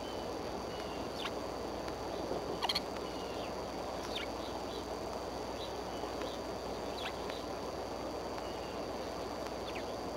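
Steady outdoor microphone hiss with a thin high whine, and faint, short, high bird chirps scattered throughout. A few sharp clicks break through, the loudest about three seconds in.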